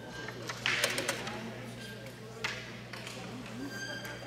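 Wooden crokinole discs clicking on the board: a quick cluster of clacks about a second in and one sharp click about two and a half seconds in, over murmuring voices in the hall.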